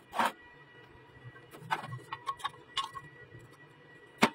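Steel hinge barrel and square steel tube being handled together: a short scrape just after the start, then a cluster of light clicks and knocks about two seconds in as the hinge is fitted against the tube.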